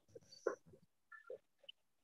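A run of short, faint animal grunts, a few a second, with quiet gaps between them.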